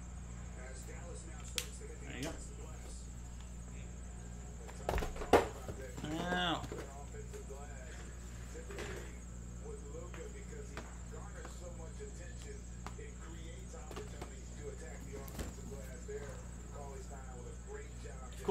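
Faint handling noises of cardboard boxes and objects on a desk over a steady low hum, with a sharp knock about five seconds in followed by a brief squeak.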